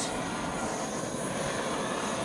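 Handheld torch flame burning with a steady hiss, held back from wet acrylic paint to warm it, bring the silicone to the top and pop air bubbles.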